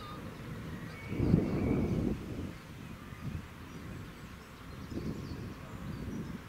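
Outdoor ambience of wind buffeting the microphone in uneven gusts, the strongest about a second in, with faint bird chirps above it.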